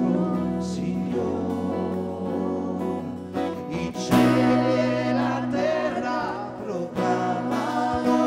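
Live worship song: a man singing into a microphone over strummed acoustic guitar and held chords, the music growing fuller about halfway through.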